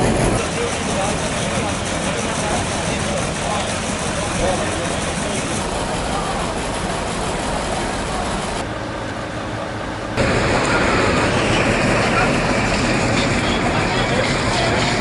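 Outdoor street noise: a steady rush of vehicle engines or traffic with indistinct voices behind it. The sound changes abruptly twice, dulling about nine seconds in and coming back louder about ten seconds in, as at cuts in the recording.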